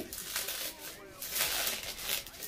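Bubble wrap crinkling and rustling as it is pulled off a boxed figure, in several short bursts, the longest about one and a half seconds in.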